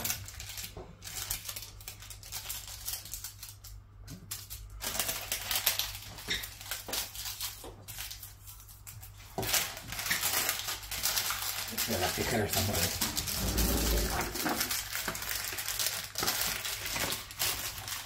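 Paper crinkling and rustling as it is folded over a small tray of set sweet, with scattered light clicks and knocks at first and steadier crinkling from about halfway on.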